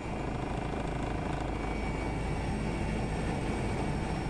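Rescue helicopter's rotor and turbine engine running steadily as it comes down to land.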